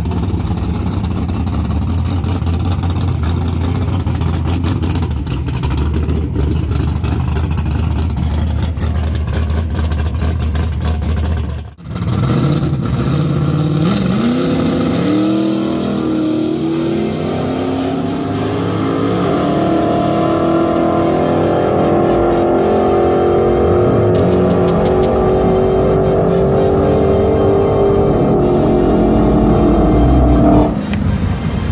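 Drag-racing cars at the strip: a loud, rough engine sound with a deep, steady hum for about twelve seconds. After a sudden break, an engine note climbs quickly and then keeps rising slowly as a car accelerates away down the track.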